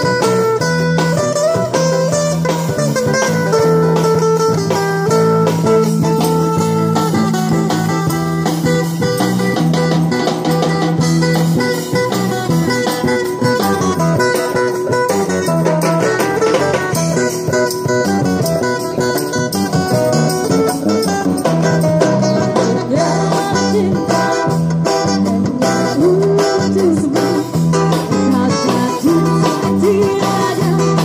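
Live busker band playing dangdut: guitar melody over a repeating bass line and drum kit, the drumming growing busier in the second half.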